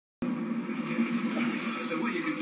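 Audio from a television's speakers recorded in the room: a steady hum with voices mixed in, starting abruptly just after the start.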